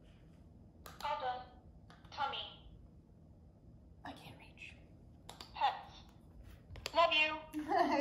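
A cat pressing recordable talking buttons on a floor soundboard: each press gives a sharp click and a short recorded phrase, "all done" and "tummy pets", several times, then "love you" near the end.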